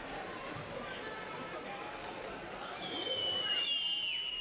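Murmur of a basketball-hall crowd during a stoppage for free throws. About three seconds in, a long, high whistle starts and drops in pitch near the end.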